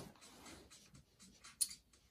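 Playing cards being handled in a quiet moment, with one short, sharp scratchy swipe of a card about one and a half seconds in.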